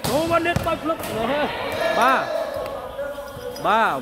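A volleyball spiked hard at the net, with a couple of sharp smacks of hand on ball and ball on the court near the start. A man's commentary runs over it.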